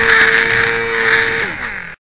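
Small electric motor and propeller of a HobbyZone Champ RC airplane, heard from the onboard camera: a steady high whine with propeller and airflow hiss and a few clicks. About one and a half seconds in, the whine slides down in pitch as the motor winds down, then the sound cuts off abruptly.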